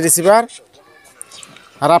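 A man's voice for the first half-second, then a quieter stretch with faint clucking of chickens and a small click, before the voice comes back near the end.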